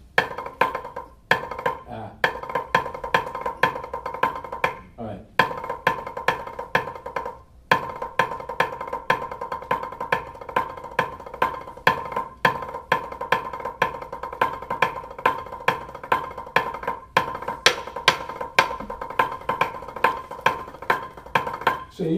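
Drumsticks playing a rudimental drum exercise on a practice pad: fast runs of sixteenth-note triplets and thirty-second notes with regular accents, broken by several brief stops.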